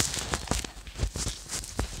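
Irregular rustling and knocking of a phone being handled close to its microphone, starting with a sudden loud bump.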